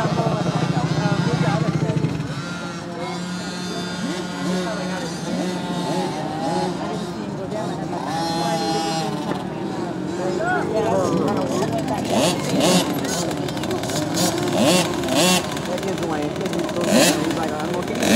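Small youth dirt-bike engines idling and running at low speed, with people talking over them. A steady engine drone in the first two seconds drops back, and short bursts of engine noise return in the last several seconds.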